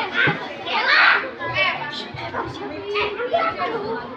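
A crowd of many children's voices talking and calling out over one another, loudest about a second in.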